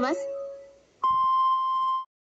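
Radio time-signal tone marking the hour: a single steady beep about a second long, starting about a second in and cutting off sharply.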